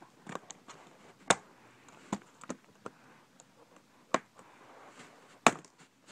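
Small screwdriver tip clicking and scraping against the plastic latches and edge of a Dell Inspiron N5010 laptop keyboard as the latches are pushed in to free it. The clicks are scattered, with the sharpest about a second in, about four seconds in and near the end.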